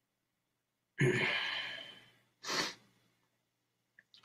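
A man's long sigh out, fading over about a second, followed a little later by a short breath in.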